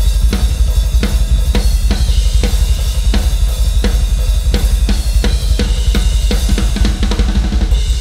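Tama drum kit with Zildjian cymbals played in a fast rock groove: sharp snare strikes about three a second over a dense run of bass drum and a continuous cymbal wash.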